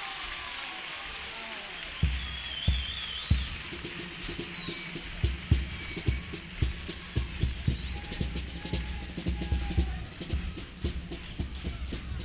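A carnival comparsa's bass drum and snare start up about two seconds in, deep thuds with sharp clicks at an uneven beat, with a few high whistling glides above them.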